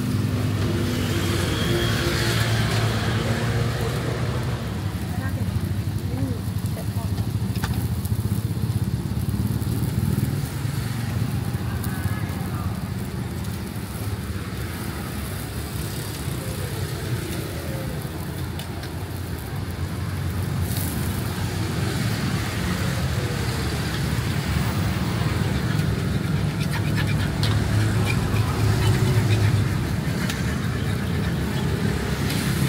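Street ambience: a steady low rumble of road traffic, with indistinct voices in the background.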